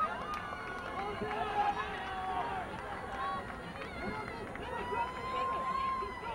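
Several voices shouting over one another across a soccer field during play, with a long drawn-out shout near the end.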